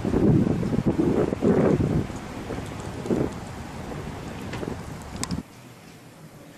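Wind buffeting the camera's microphone outdoors, in loud irregular gusts in the first two seconds and then easing, before cutting off suddenly near the end.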